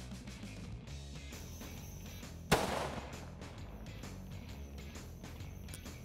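A single loud rifle shot about two and a half seconds in, with a short fading tail, over background music.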